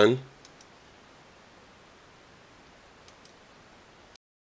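A man's word trails off at the start, then low background hiss with a few faint clicks, one about half a second in and two close together near the three-second mark.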